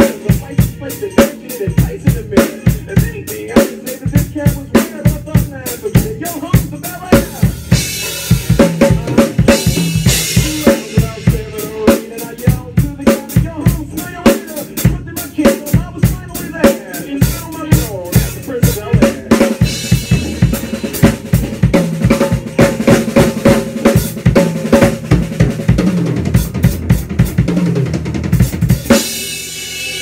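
Acoustic drum kit played along to a recorded backing track: a steady groove of kick and snare under hi-hat, with cymbal crashes now and then. The beat stops near the end and a cymbal rings out.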